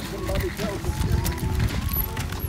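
Footsteps and stroller wheels on a wooden boardwalk, with wind rumbling on the microphone.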